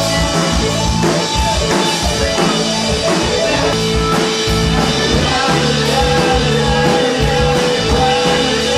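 Rock music with a drum kit and guitar playing a steady beat.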